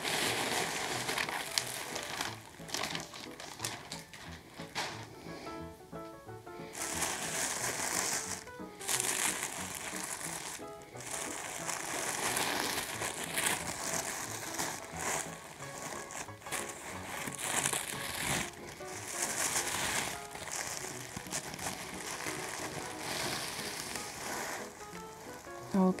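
Paper wrapping rustling and crinkling as it is folded back and unwrapped by hand from a silk garment, in uneven handfuls, with faint background music.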